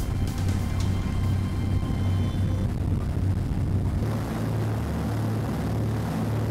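Background music over the steady low drone of a motorboat's engines running under way.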